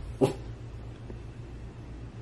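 A small dog, a chihuahua, gives a single short yip about a quarter second in.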